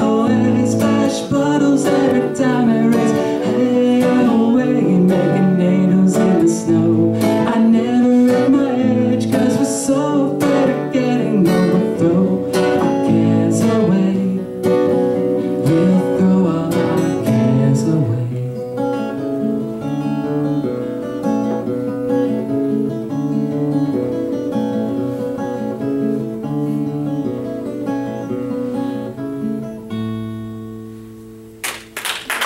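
Acoustic guitar strummed hard and busily, then lighter and sparser from a little past the halfway point, ending on a chord left to ring out as the song closes.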